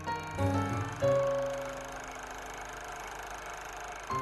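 Instrumental music: a few short pitched notes over a strong bass, then about a second in one long note rings on and slowly dies away.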